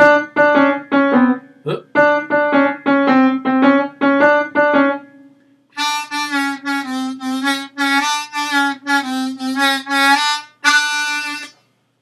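A 10-hole diatonic harmonica in C played on hole 1. It plays two runs of short, quick low notes, moving between the blow C, the draw D and the draw D bent down a semitone, with a brief gap about five seconds in.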